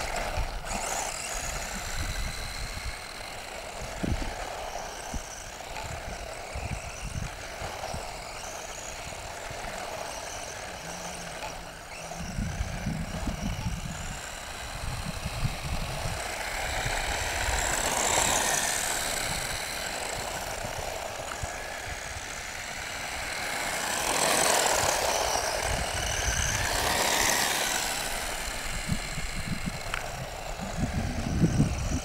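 RC car running on tarmac, its motor and gears whining in swells that rise and fall as it speeds up and slows, loudest in two stretches in the second half. Wind gusts rumble on the microphone throughout.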